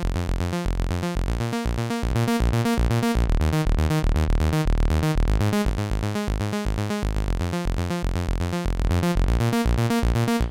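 Software Minimoog emulation playing a sequenced synth bass line: a fast run of short, bright pitched notes in quick succession, with deep low end.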